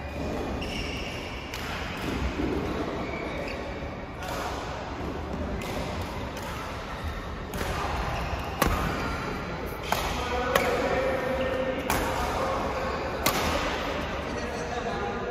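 Badminton rackets striking a shuttlecock during a doubles rally in an indoor hall: about five sharp hits, roughly a second and a half apart, in the second half.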